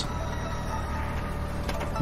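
Steady low drone of a background ambience bed, with a faint click near the end.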